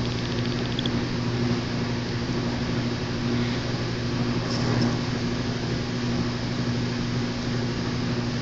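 Steady low hum with an even hiss over it: room tone from a running appliance.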